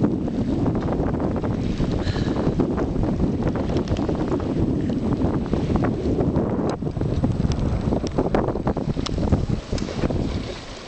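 Strong lake wind buffeting the microphone aboard a small sailboat under sail, a steady low rumbling rush. A few short clicks come in the second half.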